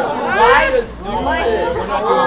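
Several people talking over one another: overlapping chatter from a group of voices, with no single clear speaker.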